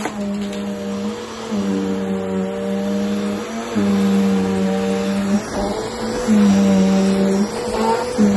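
Bissell bagless upright vacuum cleaner running on carpet. Its motor hum shifts slightly in pitch and dips briefly every second or two, and grows louder in stretches after the middle.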